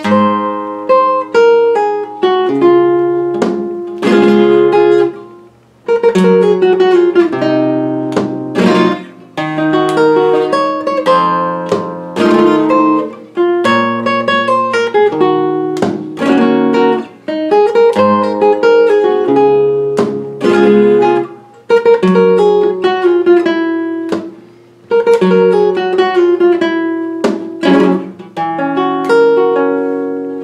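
Solo flamenco guitar playing a fandangos de Huelva falseta por mi (in the flamenco mode on E): plucked melodic runs broken by sharp strummed chords, in phrases separated by short breaks.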